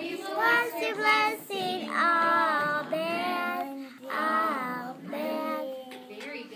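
A young girl singing a song on her own, in about three phrases with long held notes.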